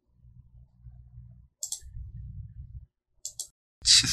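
Computer mouse clicking twice, each a quick pair of sharp clicks, about a second and a half apart, over a faint low rumble.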